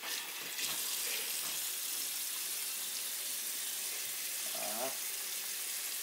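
Tap water running steadily from a bathroom faucet into a ceramic sink, with a faint brief vocal sound near the end.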